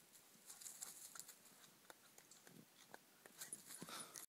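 Near silence in woodland undergrowth: faint scattered rustles and light ticks of footsteps moving through ferns and twigs, a little busier near the end.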